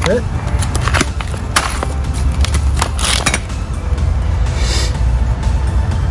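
Plastic hardware bags of bolts and nuts crinkling and rustling as they are handled, in a few short bursts about a second in and around three seconds in, over a steady low rumble.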